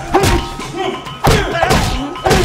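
Two heavy thumps about a second apart, over background music.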